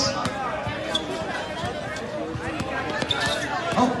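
A basketball bouncing on an outdoor hard court as a player dribbles, a series of sharp knocks at an uneven pace, with spectators' voices around it.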